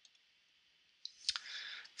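Mostly quiet, then two soft clicks about a second in, followed by a brief soft hiss just before speech resumes.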